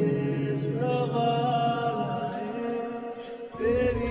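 Slowed-and-reverb lofi remix of a sad Bollywood song: a voice sings long, drawn-out notes over sustained backing. The bass drops out briefly shortly before the end, then comes back in.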